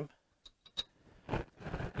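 A few light clicks of metal parts as the front seal cover is set onto the Saginaw transmission case and lined up with its bolt holes.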